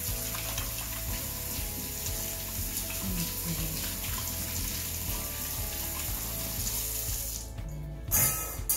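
Kitchen faucet running into a stainless steel sink while hands are rubbed under the stream; the water sound cuts off near the end.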